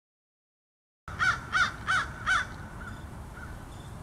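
An animal's calls starting about a second in: four loud, short, evenly spaced calls in quick succession, then a few fainter ones, over a low steady outdoor background.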